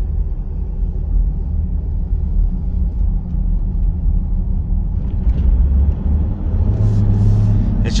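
Toyota Land Cruiser 80 series turbo-diesel straight-six heard from inside the cab while driving: a steady low engine rumble mixed with road noise. About seven seconds in the engine note strengthens and climbs as it pulls.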